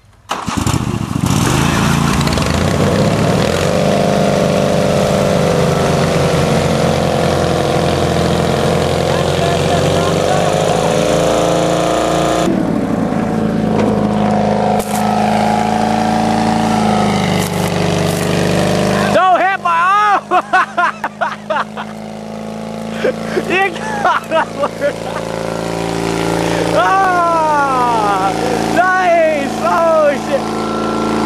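Small garden tractor engine revving up and running hard under load while pulling a stuck tractor out of mud, its pitch rising and falling. Partway through the sound changes abruptly twice, and tractor engines are then heard revving unevenly in quick rises and falls.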